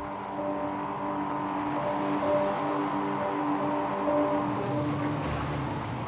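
Steady noise of an Atlantic-class inshore lifeboat's engines running at speed over the water, under background music with a repeating, pulsing note.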